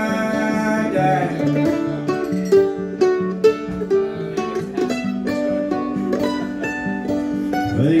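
Mandolin and acoustic guitar playing an instrumental passage together, the mandolin picking a run of quick notes over the strummed guitar. The singer comes back in at the very end.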